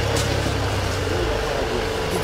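A vehicle engine running steadily under general street noise, a low hum that shifts lower about a second in.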